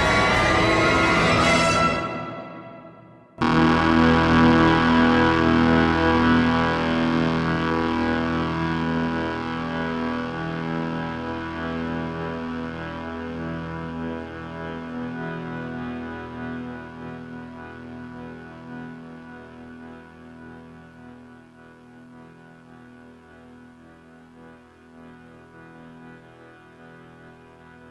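The closing seconds of the orchestral crescendo end abruptly, and after about a second and a half of silence the song's final E-major chord is struck on several pianos at once, ringing on and slowly fading.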